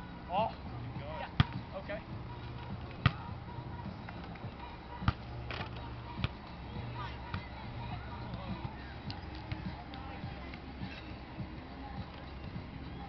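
Volleyball being hit by hand during a rally on a sand court: three sharp smacks about two seconds apart in the first half, then lighter taps, with players' voices in the background.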